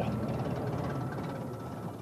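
Bus engine running as the buses drive off, a steady low rumble that slowly fades as they pull away.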